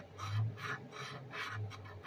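Scratch-off lottery ticket being scraped with a fingertip: short rasping strokes, about three or four a second, with two low rumbles, about half a second in and near the end.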